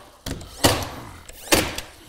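Cordless 18-gauge brad nailer firing brads into MDF baseboard. A light knock comes first, then two sharp shots about a second apart.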